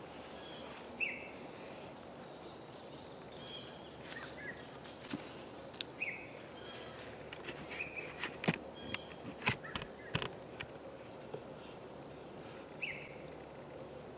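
Faint outdoor ambience with a steady background hiss and a few short, scattered bird chirps. In the second half come a cluster of small clicks and rustles from hands working the baited hook and nylon line.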